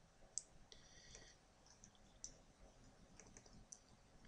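Near silence with a few faint computer mouse clicks, the loudest one near the start and two more later on.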